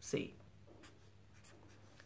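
Marker pen writing on paper: a few faint short strokes as a minus sign and a 4 are written. A short burst of voice comes right at the start.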